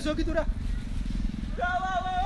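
A voice calling out in long, drawn-out tones, once at the very start and again near the end, over a steady low rumble.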